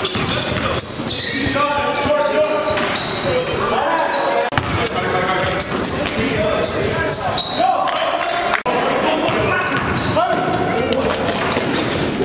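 Live basketball game audio in a gym: a ball bouncing on the court and players' voices calling out, with the echo of a large hall.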